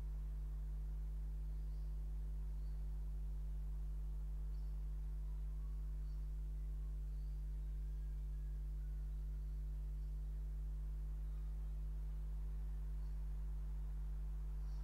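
Steady low electrical hum with a ladder of buzzing overtones, typical of mains hum picked up by the recording chain, unchanging throughout.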